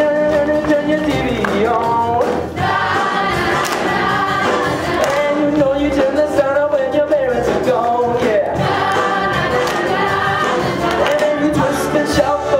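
Ensemble of musical-theatre singers singing in chorus over an instrumental accompaniment, the song carrying on throughout with one brief dip about two and a half seconds in.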